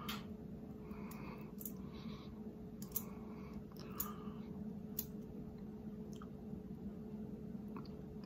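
A plastic squeeze bottle of blue cheese dressing held upside down and squeezed over a chicken nugget, giving a few faint, scattered clicks over a low steady hum.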